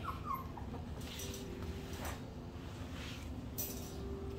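Three-week-old puppies giving a few short, high whimpers, mostly near the start, over soft rustling.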